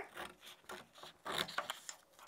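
A few faint rustles and scrapes of a sheet of construction paper being handled and slid across a wooden tabletop.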